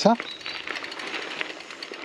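Gravel bike rolling over a compact-dirt woodland singletrack: a steady tyre-and-wind noise with a fast, light rattle of small clicks from the bike over the ground.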